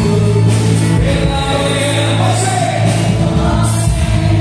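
Gospel worship music with a man singing into a handheld microphone, over sustained bass and other voices joining in.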